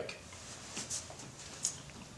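Quiet room tone with a few faint, brief rustles of a karate uniform as the wearer moves out of a stance; the clearest comes about a second and a half in.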